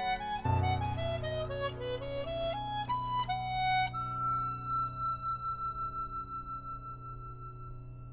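Chromatic harmonica playing a quick run of notes, then holding one long high note that slowly fades away. A low piano note sustains underneath.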